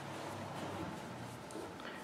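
Quiet room tone with a steady low hum, and a couple of faint soft ticks near the end from a crochet hook working yarn.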